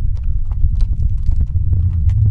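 Horses' hooves clip-clopping at a walk on a stony dirt track, in quick irregular strikes over a heavy low rumble.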